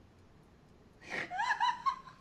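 A woman's high-pitched laughing gasps, beginning about halfway through and rising in pitch before trailing off.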